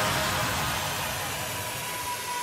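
Fading white-noise wash from a big room house track in a DJ mix, a transition effect between sections, slowly dying away with a faint steady high tone entering about halfway through.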